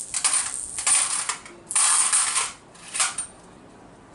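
Five-rupee coins dropped into a small hanging steel vessel, rattling and clinking in two bursts of about a second each, then a brief third clink.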